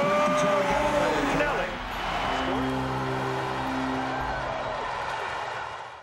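Soft background music of long held chords, with a crowd's cheering and shouting voices rising over it early on and again briefly mid-way; it fades out at the end.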